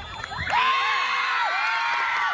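A crowd of spectators breaks into cheering and shouting about half a second in, many voices yelling over one another.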